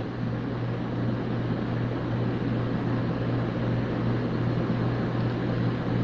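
Steady low hum with an even hiss over it, unchanging throughout: the background noise of the recording.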